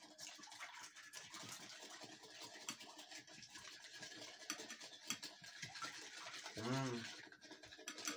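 A metal spoon stirring salt into a liquid in a ceramic bowl: a faint, continuous scraping of the spoon against the bowl's bottom. A short hummed voice comes near the end.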